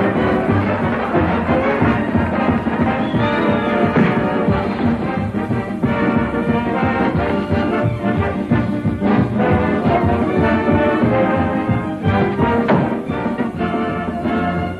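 Orchestral music with brass, loud and busy throughout.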